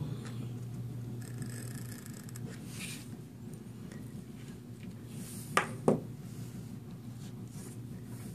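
Faint scraping of a craft knife cutting a strip of duct tape along the edge of a plastic card on a cutting mat, over a steady low hum. About five and a half seconds in come two sharp knocks a third of a second apart.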